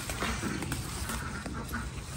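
Ducks quacking, with the rustle of leafy bean plants being handled and picked over.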